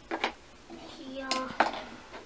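Small plastic toy tea-set dishes clicking against each other and the table as they are set down, with two sharp clicks about a second and a half in, under a girl's voice.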